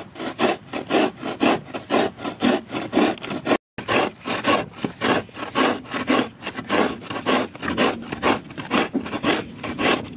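Fresh coconut being grated by hand: rhythmic rasping strokes, about four a second, with a brief break a little under four seconds in.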